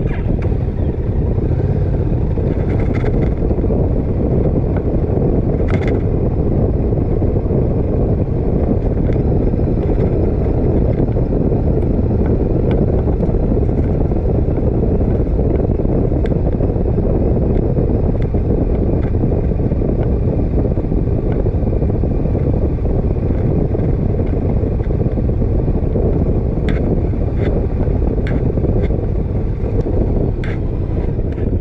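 Motorcycle riding at low speed: steady wind noise on the microphone mixed with the bike's engine running.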